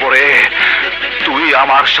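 A man's raised, angry voice in film dialogue, with background music underneath.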